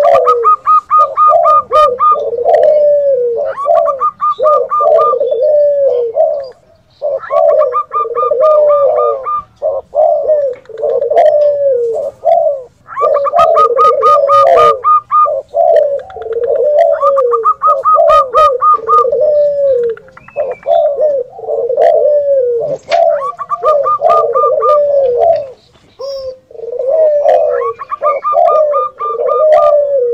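Recorded cooing of spotted doves, zebra doves and Barbary (ringneck) doves layered over one another. Low coo phrases repeat about once a second throughout, and every few seconds a quick run of higher staccato notes lasting a second or two comes in over them.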